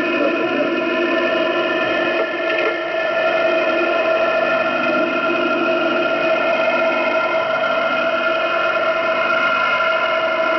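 Shortwave radio receiver tuned to 5448 kHz in lower sideband, giving out a steady hiss of static with several constant whistling tones laid over it and no voice on the channel.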